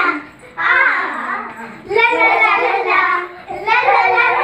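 Young girls' voices singing a children's Christian song together without instruments, in three short phrases with brief breaks between.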